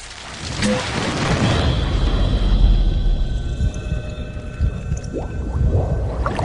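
Cinematic intro sound effect: a deep, thunder-like rumble that builds over the first second or two and holds, with faint steady tones over it and a few short rising sweeps near the end.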